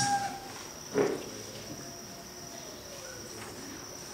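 Quiet pause of low room tone with a thin, steady high-pitched whine, broken by one short sound about a second in.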